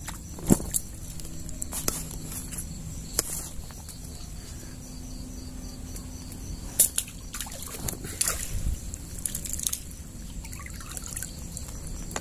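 Water trickling and sloshing around a mesh keepnet of crucian carp in the shallows at the bank, with a few sharp knocks, the loudest about half a second in and another just before seven seconds.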